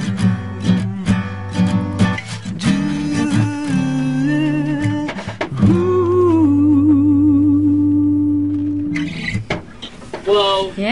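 Acoustic guitar strumming with a singer, the closing of a song: about halfway through, a last chord rings under one long held vocal note that fades out about a second before the end.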